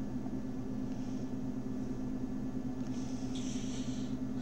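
Steady low hum of background machine or room noise, made of several even low tones, with a faint hiss near the end.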